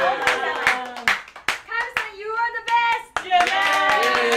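A small group clapping along in time, about three claps a second, the beat loosening around the middle, with excited raised voices over it.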